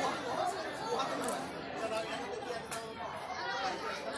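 Chatter of several people talking at once, no single voice standing out.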